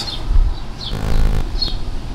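Birds chirping in short, high calls over a low rumble on the microphone.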